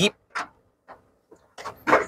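A hand brushing and tapping inside a dashboard storage slot: a few short, faint clicks and scrapes.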